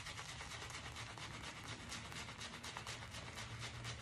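Shaving brush scrubbing shave-soap lather on the face, a quick run of faint, even scratchy strokes as the bristles work the lather up.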